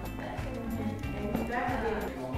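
A horse's hooves shifting and stepping on the floor, with faint background music and quiet voices.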